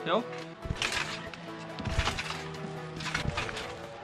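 Background music with a few dull thumps about a second apart: a trampbike and rider bouncing on a trampoline mat.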